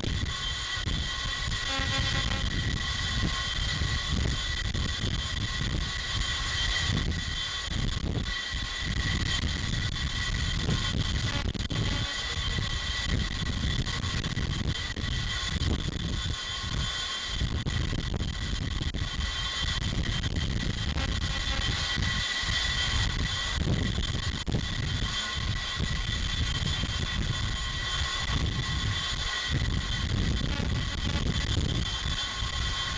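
Jet engines running on an aircraft carrier's flight deck: a steady high turbine whine over a low, fluctuating rumble that never lets up.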